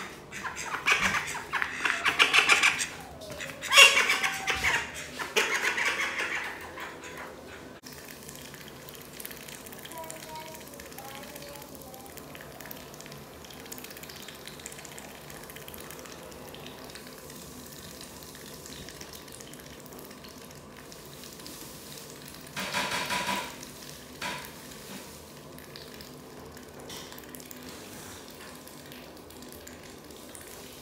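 A white call duck slurping wet grain feed from a bowl, dabbling its bill in it with a steady soft wet sound. The first several seconds hold louder rough bursts, and there is one short louder burst about two-thirds of the way through.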